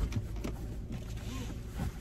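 Low steady hum inside a car's cabin, with a soft thump right at the start and faint bits of voice, while the driver's seat belt is being handled.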